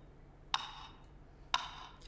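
Steady ticking in the playing concert recording: two sharp ticks a second apart, each with a short ringing tail, a sound puzzling enough that the listener asks what it is and whether it means something.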